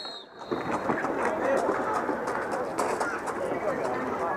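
Overlapping voices of several people talking and calling out at once, with scattered light clicks mixed in.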